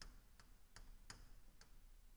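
About five faint, irregular ticks of a pen stylus tapping a writing tablet as handwriting is written, over near silence.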